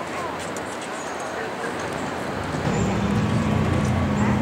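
Bystanders' voices talking in the background, then from about two and a half seconds a louder low, steady drone joins in and becomes the loudest sound.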